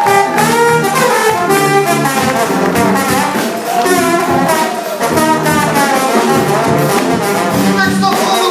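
Brass band playing live, loud: trumpets, trombones, saxophone and sousaphone playing a rhythmic tune together.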